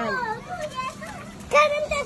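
Young children's voices while they play, with a short high-pitched call from a child about one and a half seconds in, after an adult woman's words at the start.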